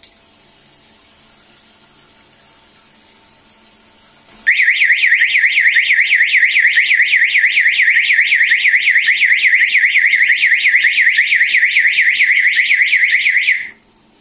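Electronic siren of a float-switch water-level alarm sounding a loud, fast up-and-down warble, set off as the rising water lifts the float switch: the tank-full alarm. It starts about four seconds in over faint running water and cuts off suddenly just before the end.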